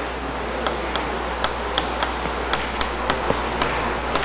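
Light, irregular taps and clicks, a few a second, typical of writing on a board during a lecture, over a steady low hum and hiss.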